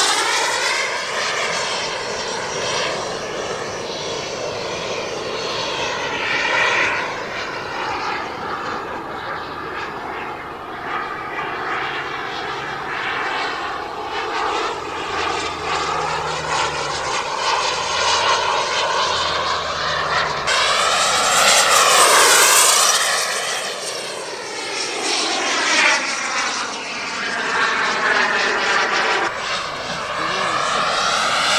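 Turbine jet engine of a radio-controlled F-4 Phantom model in flight, a steady rushing whine that swells and fades as the jet makes passes, its pitch sweeping as it goes by. The loudest pass comes a little past two-thirds of the way through.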